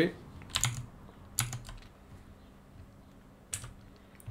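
Computer keyboard keys pressed a few times: separate short clicks in small groups, about half a second in, around a second and a half, and near the end.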